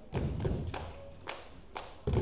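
Dancers' claps and stomps on a wooden stage: a heavy thud just after the start, then about four sharp, uneven claps or slaps over two seconds.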